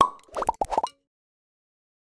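Cartoon plop sound effects in an animated logo intro: one sharp pop, then a quick run of about five short rising plops, all within the first second.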